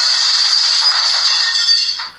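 Dubbed-in sound effect of a computer breaking down: a loud, steady, harsh hiss that starts suddenly and fades out near the end.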